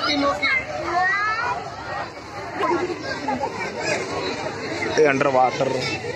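Several people talking at once, children's voices among them: loose chatter of a group of onlookers.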